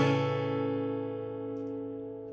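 Taylor PS10ce acoustic guitar's final strummed chord ringing out, the notes holding steady and slowly fading away.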